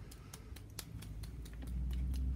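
A paintbrush loaded with watered-down white acrylic paint, tapped over and over to flick splatters onto paper: a run of light, irregular clicks, about six a second.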